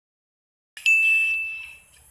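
A single bell-like ding: one clear, high tone that starts suddenly and fades away over about a second.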